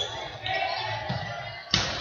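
Sports-hall ambience during an indoor football match: a steady murmur of spectators with repeated dull thuds of the ball on the floor and boards. A sharp ball strike comes near the end.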